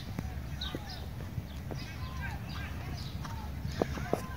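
Hoofbeats of a trotting horse on the sand footing of a dressage arena: a few soft, irregular thuds over a steady low background rumble.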